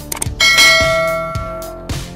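A single bell-chime sound effect strikes about half a second in and rings out, fading over about a second and a half. It plays over background guitar music with a steady beat.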